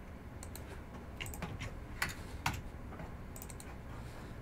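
Faint typing and clicking on a computer keyboard, with two sharper clicks about two seconds in.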